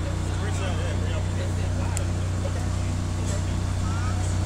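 Steady low drone of a fire apparatus diesel engine idling, from a parked aerial ladder truck, with faint voices in the background.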